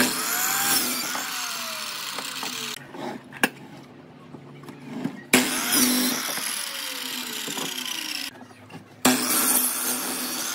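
Sliding compound miter saw cutting wood three times: each time the motor comes up with a sudden loud start, the blade goes through the board, and the motor's whine then falls steadily in pitch as the blade coasts down. The starts come at the beginning, about five seconds in, and near the end.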